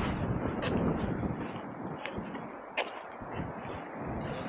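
Wind buffeting the camera microphone, an uneven rumbling gust noise with a couple of short clicks.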